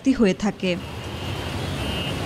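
Busy city street traffic: a steady rumble and hiss of passing vehicles, heard after a voice stops just under a second in.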